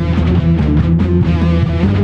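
Heavy rock music: an electric guitar playing a riff over bass and a backing track, with notes changing quickly and the band playing without a break.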